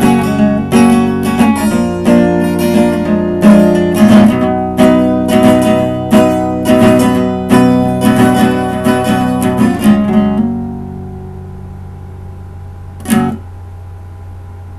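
Acoustic guitar strummed in a closing run of chords, which stop and ring out about ten seconds in. A steady low hum stays underneath, and a single short knock comes near the end.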